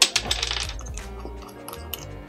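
Small metal hex tools clinking on a wooden desk: a sharp clack at the start with a brief jingling rattle, then a few lighter ticks. Background music plays throughout.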